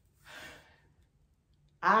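A woman's short breathy sigh, then she starts to speak near the end.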